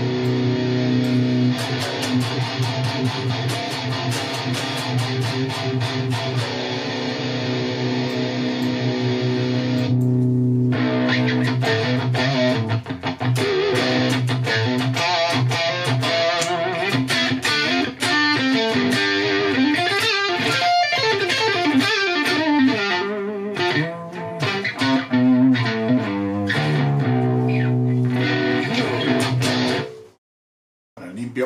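Electric guitar played through the Fortin NTS amp-simulator plugin by Neural DSP on a saturated high-gain metal tone. For about ten seconds a low note is picked over and over; then comes a faster riff with many changing notes, which cuts off suddenly at the end.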